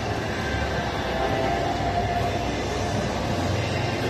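Busy shopping-mall ambience: a steady, even din of indoor crowd and hall noise with no distinct event.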